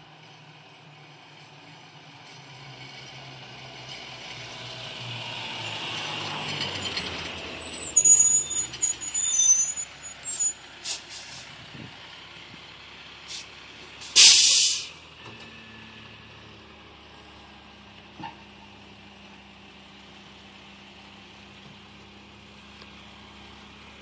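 Rear-loader garbage truck approaching, its diesel engine growing louder, then a series of short, sharp squeals and clanks as it slows, and a loud air-brake hiss as it stops about halfway through. It then idles with a steady low hum.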